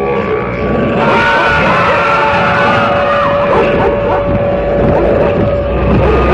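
A loud, dense layered intro soundtrack to a radio broadcast. A single steady held tone runs under many overlapping sliding, wavering pitches and noise, and the texture thickens about a second in.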